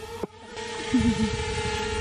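Small quadcopter drone's propellers humming at a steady pitch, over a low rumble.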